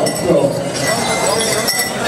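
Metal bells and jingles on pow wow dancers' regalia clinking and jingling as the dancers move close by, under a public-address voice.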